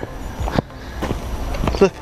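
Footsteps on a sandy dirt trail with wind buffeting the microphone in a steady low rumble.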